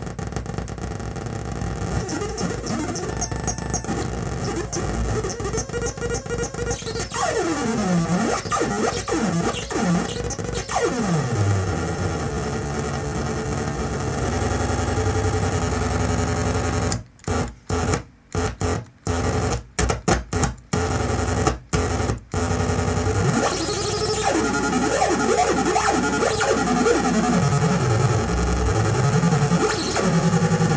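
Homemade multi-oscillator analog synth pedal droning: a dense, noisy cluster of tones whose pitches swoop down and back up as the knobs are turned. Midway through it cuts out and back in about ten times in quick succession.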